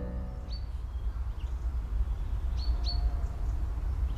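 A few short, high bird chirps, each dropping quickly in pitch, over a steady low outdoor rumble.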